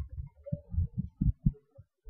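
Marker writing on a whiteboard, heard as a string of irregular, dull low thumps, about seven in two seconds, as the strokes press on the board.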